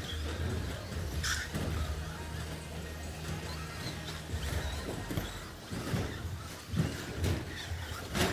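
Electric RC short-course trucks racing on an indoor track over a steady low hum, with a short burst of noise about a second in and scattered knocks in the second half as the trucks land jumps and strike the track.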